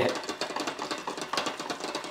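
Fixed-spool spinning reel being cranked fast, its rotor and gears whirring with a rapid, even ticking as line winds onto the spool.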